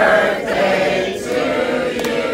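A group of people singing together.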